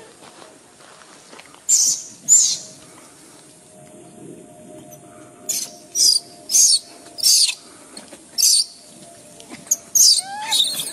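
Newborn macaque squealing: a series of short, very shrill cries, two about two seconds in, then a quick run of about five more through the second half.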